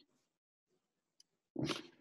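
Near silence, then about one and a half seconds in a single short, breathy burst from a person.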